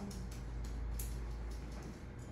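Room tone: a steady low hum, with a single faint click about a second in.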